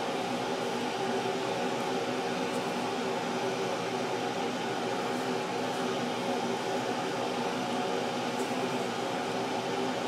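A fan running steadily in the background: a constant hum made of several steady tones over an even hiss.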